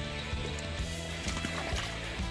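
Background music with short, repeated low notes.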